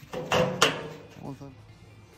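A steel vent plate sliding down its welded metal track with a scraping, ringing sound, stopping with a sharp clank about half a second in.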